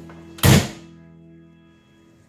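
A car door shut with one solid thunk about half a second in, over background music holding a final chord that fades away.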